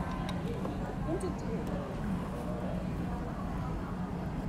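Restaurant room tone: a steady low hum with faint voices of other people in the background and a few light clicks.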